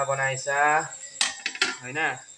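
Stainless steel bowl-shaped cover set down over a frying pan on a gas stove, clinking metal on metal a few times from a little past the middle.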